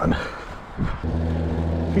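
Mountain bike rolling over rough grass, then onto asphalt about halfway through, where its knobby tyres set up a steady low hum.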